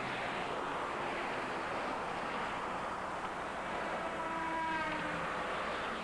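Street traffic: a car passing close by, then a steady wash of traffic noise, with a faint pitched whine about four to five seconds in.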